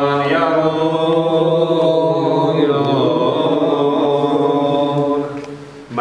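A man's voice chanting one long drawn-out line with a slowly wavering pitch. It fades out briefly just before the end, then starts again.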